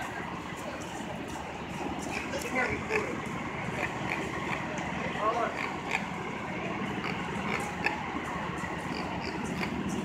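City street noise: a steady hum of traffic with distant, indistinct voices of people talking.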